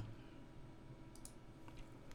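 A few faint clicks at a computer, about a second in and again near the end, over quiet room tone.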